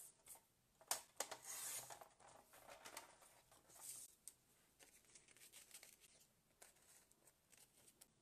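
Faint handling of cut paper pieces on a tabletop: light rustles and slides, with a sharp tap about a second in followed by a rustle of about a second, and smaller rustles after.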